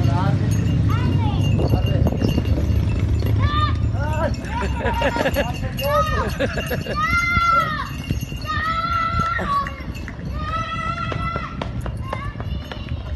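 Several shrill, drawn-out voice cries, each rising and falling in pitch, from about three seconds in to near the end, over a low outdoor rumble.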